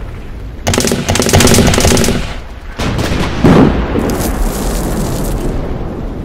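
Battle sound effects: a long burst of rapid machine-gun fire, then a loud explosion about three and a half seconds in, followed by more gunfire that fades.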